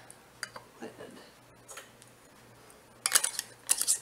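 A metal canning lid and screw band going onto a glass Mason jar. A couple of light clicks come in the first second, then a quick run of metal-on-glass clinks and scrapes in the last second as the band is twisted onto the jar's threads.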